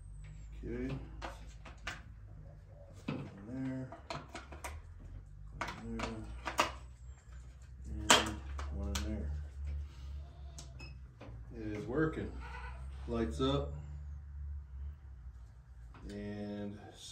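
Goat bleating, about six wavering calls a couple of seconds apart, with sharp clicks in between.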